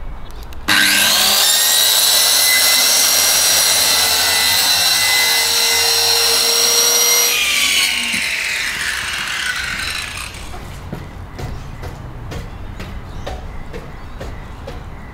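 Corded electric power saw switched on with a rising whine, running at full speed against a taped cardboard box for about six seconds, then switched off and winding down in falling pitch over a few seconds.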